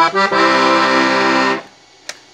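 Beltuna Alpstar piano accordion sounding a held chord on its treble reeds with one of its 'accordion' register switches engaged. The chord sounds steadily for just over a second and stops sharply about a second and a half in.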